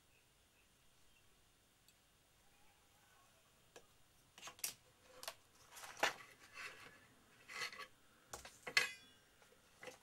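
Light handling noises on a workbench: short clicks, taps and rustles from cut card pieces, a utility knife and a steel ruler being picked up and set down. They begin about four seconds in and come in a cluster, the sharpest about six seconds and just under nine seconds in.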